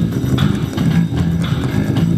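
Two electric bass guitars played together through an amplifier in a freestyle jam: a steady run of quick plucked low notes.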